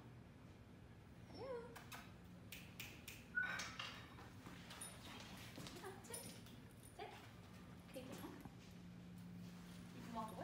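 German Shepherd whining softly, a string of short high whines that rise and fall in pitch, several in a row, with a few faint clicks between them.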